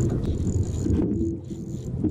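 Wind rumbling on the camera's microphone over open sea, uneven and gusty, with a faint high-pitched whine that comes and goes.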